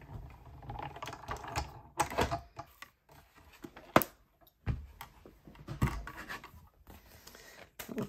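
Acrylic cutting plates being run through a hand-cranked Stampin' Cut & Emboss die-cutting machine and lifted out. Irregular plastic clicks and clacks, with a sharp knock about four seconds in.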